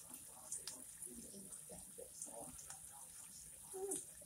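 Wire whisk stirring bubbling sweet chili sauce and butter in a small saucepan, with a few faint clicks of the whisk against the pan. A faint voice murmurs underneath, and a louder "okay" comes at the end.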